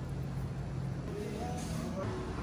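Steady low hum of bakery kitchen machinery, with faint pitched tones coming in about a second in.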